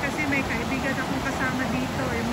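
Steady rush of a river's rapids and falls over rock ledges, with a person's voice talking over it.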